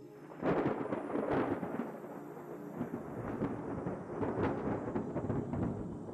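Thunder sound effect: a sudden crash about half a second in, then a crackling rumble that slowly fades over the next five seconds.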